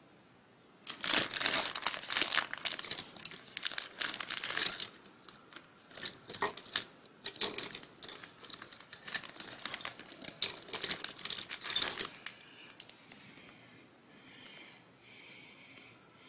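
Crinkling and rustling of something being handled close by, in dense crackly bursts from about a second in, stopping about twelve seconds in.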